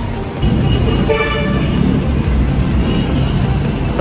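Road traffic rumble with a short car horn toot about a second in.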